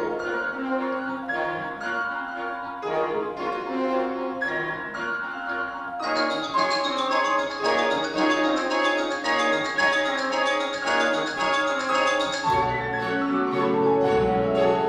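Grand piano and symphony orchestra playing a contemporary piano concerto: quick, ringing piano figures over the orchestra. The sound fills out in the higher range about six seconds in, and deep low notes come in near the end.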